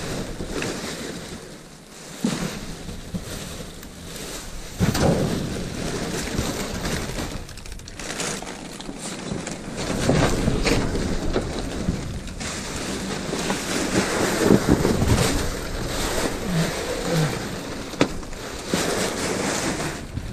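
Plastic wrapping, bubble wrap and cardboard rustling and crinkling as things are pulled about in a dumpster, with wind gusting over the microphone.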